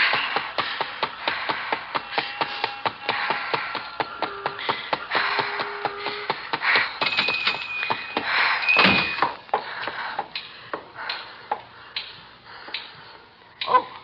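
Radio-drama sound effects: quick, evenly paced running footsteps, about four a second, with a music cue playing under them. About eight to nine seconds in there is a brief high ringing ping, followed by slower, quieter steps.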